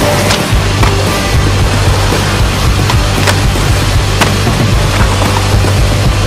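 A skateboard rolling on concrete, with a few sharp clacks of the board, under loud music with a heavy bass.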